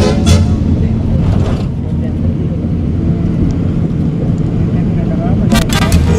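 Low, steady rumble of a car in motion heard from inside the cabin while the music drops out. Sharp band hits come back in near the end.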